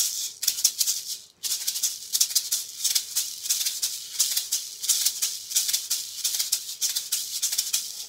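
A pair of Cuban-style maracas shaken in a quick, even rhythm. He plays them with movement of the arms rather than a tight grip, for a swishier sound. There is a short break about a second and a half in, then the shaking carries on steadily.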